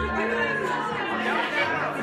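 Several people talking over one another in an excited chatter, with music playing low held notes underneath.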